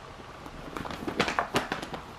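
Crinkly packaging wrap crackling as it is handled, a quick run of sharp crackles through the second half.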